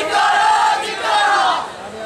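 A group of young men shouting a protest slogan together, two loud shouted phrases that break off about a second and a half in.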